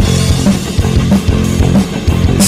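Rock band playing an instrumental passage between sung lines: electric guitar over a drum kit, with steady drum hits.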